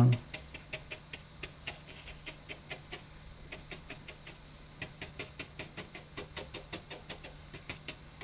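Fan-shaped watercolour brush of blended natural hair, a Pro Arte Masterstroke Fantasia, dabbed again and again onto textured watercolour paper: a quiet run of quick light taps, about three or four a second, sparser in the middle, over a faint steady hum.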